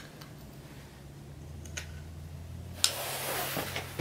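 A few light clicks and taps of metal parts being handled as a motorcycle brake caliper and its small bolt are fitted together, the loudest tap a little under three seconds in, over a faint steady low hum.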